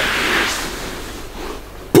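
A man's heavy, breathy exhale of effort as he strains through a military push-up, fading out after about a second.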